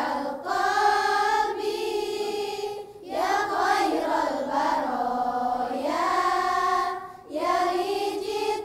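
Choir of girls and young women singing a nasheed, with short breaks between phrases about half a second, three seconds and seven seconds in.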